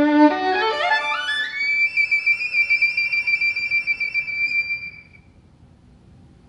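Violin playing: a held low note, then a fast rising run up to a very high note that is held with vibrato for about three seconds and dies away about five seconds in.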